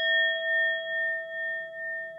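A singing bowl ringing on after a single strike, its tone wavering in loudness about twice a second as it slowly dies away.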